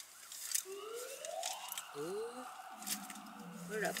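Coin-operated car-wash vacuum motor starting up: a whine that climbs in pitch for about a second and then holds steady. A lower steady hum joins it about three seconds in.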